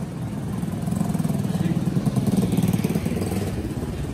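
An engine idling nearby, a steady low-pitched running sound with no change in speed.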